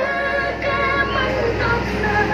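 Background music: a song with a singing voice and held notes.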